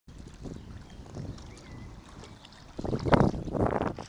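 Wind buffeting the camcorder microphone as a low rumble, with two stronger gusts about three seconds in.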